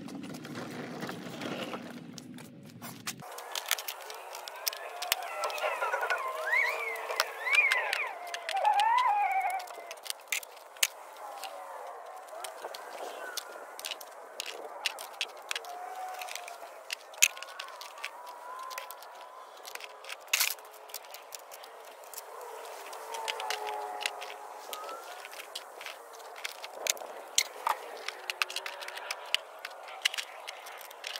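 Scattered sharp clicks and clinks of hand tools being picked up and set down. For a few seconds near the start, wavering rising and falling tones sound over them.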